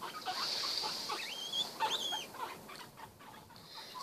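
Guinea pigs chewing leafy greens, a quiet run of small crunching clicks, with two short high squeaks about one and a half and two seconds in.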